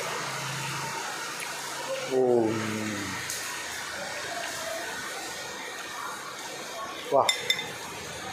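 A man's long, falling "mmm" of enjoyment while chewing, over steady room hiss. Near the end, a short exclamation comes with a few light clicks.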